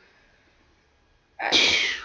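Near silence, then about a second and a half in a woman's short, loud, breathy burst of voice.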